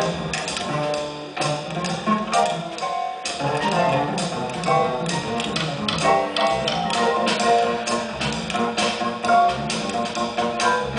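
Jazz big band playing live: a saxophone section and brass over piano, double bass and drums, with drum and cymbal strokes keeping a steady beat.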